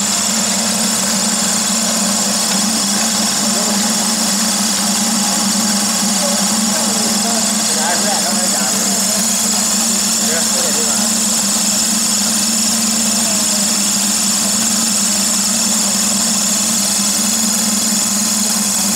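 Floating fish-feed pellet extruder and its drive motor running steadily under load: a constant low drone with a continuous high hiss, as puffed pellets stream out of the die.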